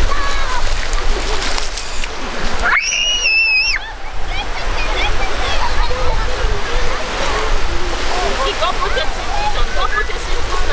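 Waves and splashing in shallow surf, with wind rumbling on the microphone and children's voices and shouts throughout. About three seconds in, a child gives one high-pitched squeal lasting about a second.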